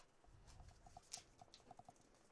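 Near silence: faint background ambience with a handful of soft, short chirps and a few light ticks, the clearest tick a little after a second in.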